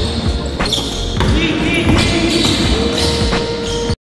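Court sound of an indoor basketball game: a basketball bouncing on the wooden floor a few times at uneven intervals, with players' voices and music underneath. The sound cuts off suddenly just before the end.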